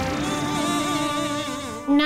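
Eerie soundtrack cue: several wavering, warbling tones over a steady hiss, stopping just before the end.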